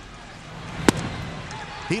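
A 93 mph pitch popping once, sharply, into the catcher's mitt about a second in for a called strike three, over stadium crowd noise that swells around it.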